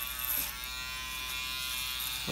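Electric hair clippers running with a steady buzz while trimming a child's hair around the ear.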